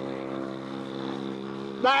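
A steady, unchanging mechanical drone, like an engine running at a constant speed, fills the pause. A man's voice comes in near the end.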